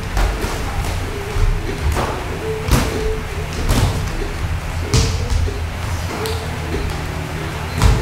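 Boxing gloves thudding as punches land during sparring: several sharp hits at irregular intervals, the loudest near the end, over music playing in the background.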